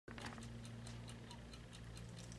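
Faint room tone: a steady low hum with light, rapid ticking, several ticks a second.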